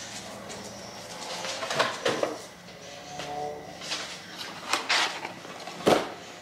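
Boxes and packets of tea being taken down from a shelf and set down: a run of knocks and light clatter, the sharpest knock near the end.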